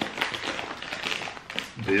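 Plastic snack bag crinkling in the hands: a quick run of irregular crackles.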